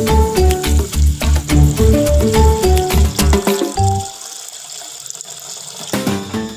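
Background music with a steady beat, over water pouring into an aluminium pot; the music stops about three and a half seconds in, leaving the splashing of the water alone.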